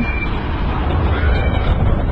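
Steady low rumble of vehicle engines and street traffic, with a large truck close by.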